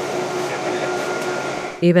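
Steady cabin noise inside a MAN 18-metre electric articulated bus under way: an even rushing sound with two faint steady tones running through it. It stops abruptly near the end, where a voice begins.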